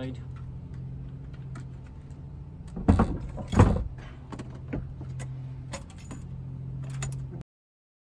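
A heavy car battery knocking twice into its metal tray as it is shifted into place, with lighter clicks and rattles of cables and plastic around it. A steady low hum runs underneath, and the sound cuts off suddenly near the end.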